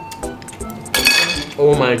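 Spoon and chopsticks clinking against a ramen bowl, with one sharp ringing clatter about halfway through, over background music with a steady beat; a voiced exclamation comes in near the end.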